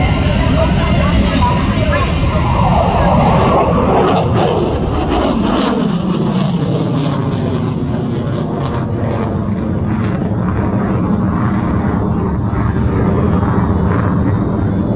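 F-22 Raptor's twin Pratt & Whitney F119 turbofan engines, loud jet noise as the fighter flies past, the pitch falling as it goes by. About four seconds in the hiss thins out and the noise carries on as a steady, lower rumble while the jet climbs away.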